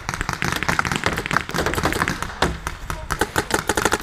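Paintball markers firing, a rapid, uneven string of sharp pops.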